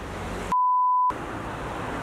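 A single edited-in censor bleep: one steady pure-tone beep about half a second long, starting about half a second in, with all other sound muted under it. Street traffic noise runs before and after it.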